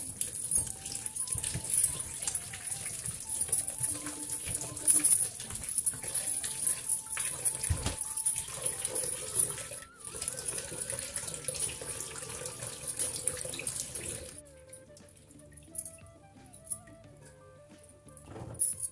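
Kitchen tap running into a glass bowl in a stainless steel sink while vegetables are washed by hand, with glass bangles clinking on the wrists. The running water stops about fourteen seconds in, leaving soft background music.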